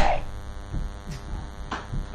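Steady buzzing electrical hum on a telephone conference-call line, holding on one pitch with many overtones.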